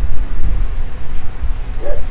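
A neighbour's dog barking faintly, under a louder low rumble.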